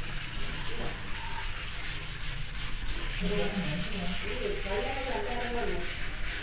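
A chalkboard being wiped clean with a board eraser: a run of short rubbing strokes against the board.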